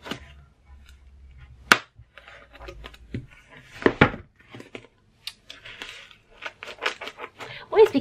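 Scissors snipping and cutting through the packing tape and cardboard of a parcel. There is one sharp snip nearly two seconds in, then a run of short cuts and crackles of tape and card in the second half.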